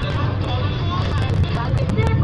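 A steady low hum, with people talking in the background and scattered light clicks.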